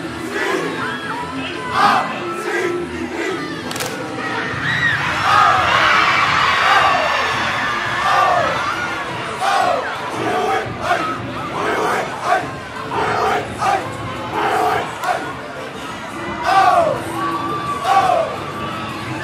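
Crowd of students cheering and shouting in a gymnasium, with short loud yells that rise and fall in pitch breaking out every second or so.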